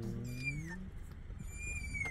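A puppy whining: two thin, high whines that each fall in pitch, one in the first second and one near the end. Under the first whine, a low, drawn-out voice is held and then stops about a second in.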